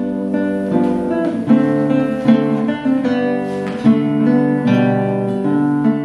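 Solo classical guitar played fingerstyle, a melody of plucked notes over chords, each note ringing on after it is struck.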